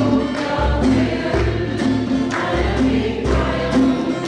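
A small group of women singing a worship song together, over instrumental accompaniment with low bass notes pulsing about once a second.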